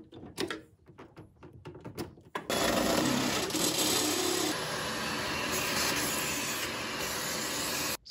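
A few light clicks and taps of hands at screw terminals, then from about two and a half seconds in a cordless drill running steadily, boring through the sheet-metal wire trough.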